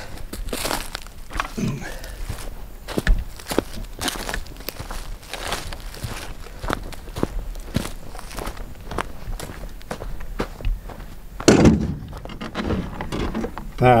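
Footsteps crunching over dry leaves and twigs on a forest floor, an irregular run of steps. About two-thirds of the way through there is one louder thud.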